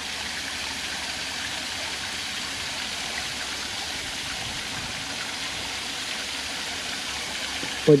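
Steady rushing noise like running water, even and unbroken.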